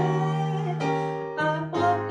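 A woman singing a slow jazz ballad into a microphone over chords on a keyboard. A held, gliding note at the start gives way to the keyboard chords alone, and her voice comes back with vibrato near the end.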